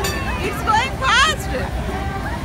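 Fairground hubbub of background chatter over a steady low rumble, with a loud high-pitched voice calling out about a second in.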